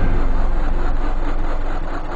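Loud engine-like rumble in a logo intro's sound track, beginning to fade near the end.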